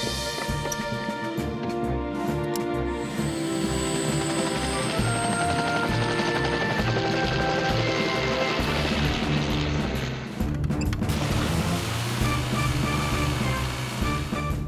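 Background action music over a cartoon rescue helicopter starting up and lifting off. The rotor and engine noise joins the music a few seconds in and drops away about ten seconds in.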